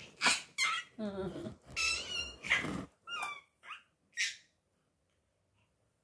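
Baby squealing and laughing in a run of short, high-pitched excited bursts, some sliding up or down in pitch, that stop about four and a half seconds in.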